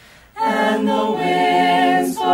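Vocal ensemble singing the alma mater a cappella in sustained harmony. The singers break off for a short breath and re-enter together just under half a second in, holding chords.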